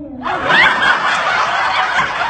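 Several people laughing loudly together, starting suddenly about a quarter second in.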